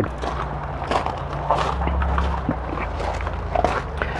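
Footsteps walking on gravel, light and irregular, over a steady low rumble.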